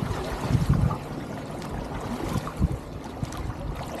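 Kayaks being paddled: water sloshing, splashing and trickling around the hulls and paddle blades, with strong low rumbling buffets in the first second.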